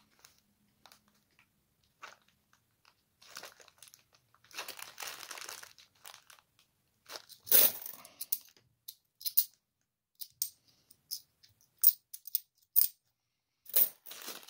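Clear plastic coin-bag wrapping crinkling in short bursts, the loudest a little over halfway through. Then come a series of sharp little clicks as 50p coins are handled and knock against each other.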